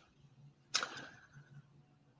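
A quick, sharp intake of breath about three-quarters of a second in, fading out over about a second, over a faint steady low hum.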